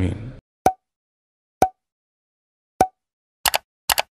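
Three separate short pops about a second apart, followed near the end by two quick double clicks: the sound effects of an animated like-share-subscribe end card, set against digital silence.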